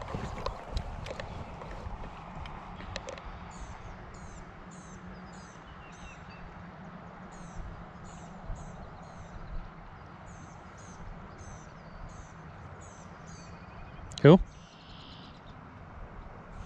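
A small bird singing a long run of short, very high notes, a few a second, over a steady low outdoor background noise.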